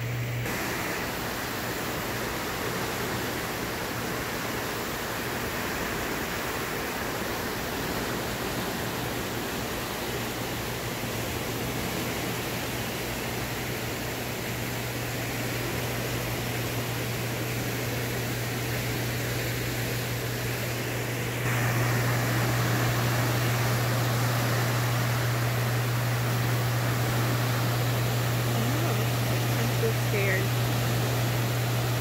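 Turbulent water boiling up in a hydroelectric dam's tailrace from the turbine outflow: a steady rushing noise with a steady low hum beneath it. It grows louder about two-thirds of the way through.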